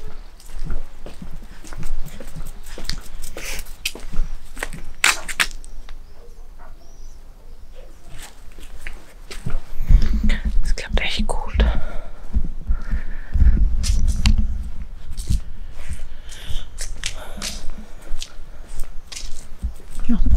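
Low, irregular rumbling on the microphone from the camera being swung about and handled, in bursts from about halfway through, with scattered sharp clicks and soft breathy sounds throughout.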